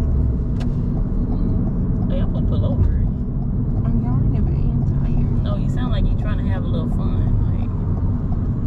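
Steady low road-and-engine rumble inside the cabin of a moving car, with faint voices now and then.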